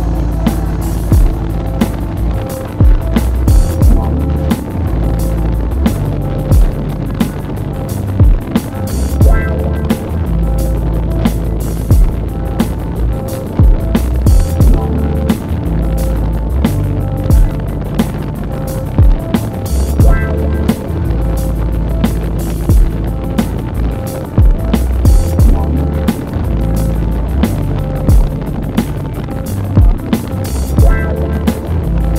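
Music with a steady drum beat and heavy deep bass notes.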